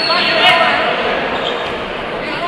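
Crowd voices from the spectators around a boxing ring, with a single sharp thump about half a second in.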